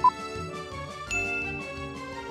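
Quiz sound effects over light background music: a short beep right at the start, the last tick of a countdown that beeps once a second, then about a second in a held high chime as the correct answer is revealed.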